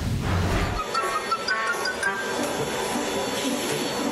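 TV news logo sting: a loud, bass-heavy burst of transition sound that cuts off abruptly under a second in. It is followed by faint music, a short run of high stepping notes, over a quieter mixed background.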